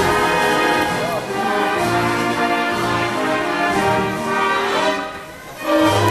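Orchestra with brass playing a show tune, with a short drop in level near the end before the band comes back in loud.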